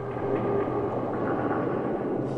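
A steady low rumbling drone with a few faint held tones over it: a documentary sound bed beneath the narration.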